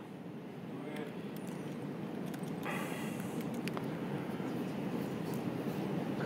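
Faint, muffled voices from the audience, too far from the microphone to make out, over steady room noise that slowly grows louder.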